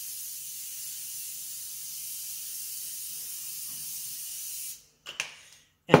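Aerosol can of olive oil cooking spray hissing in one long continuous spray as it greases silicone baking molds. The spray cuts off near the end, followed by a couple of short clicks.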